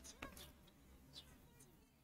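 Near silence: room tone with a few faint, brief clicks near the start and about a second in.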